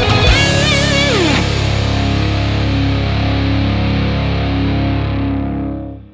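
Heavy rock music: a distorted electric guitar holds a wavering lead note that dives steeply down in pitch about a second in. The band's final chord and a crashing cymbal then ring out and fade away near the end.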